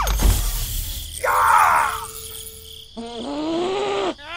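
Cartoon-style sound effects for a character picking a lock. A noisy scrape and burst fill the first two seconds, and a high, bending character voice groans about three seconds in.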